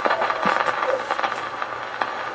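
Acoustic Victrola gramophone with an HMV No. 5A soundbox and cactus needle tracking the lead-in groove of a 1912 Lyrophon 78 rpm disc: steady surface hiss and crackle with scattered clicks, before any voice.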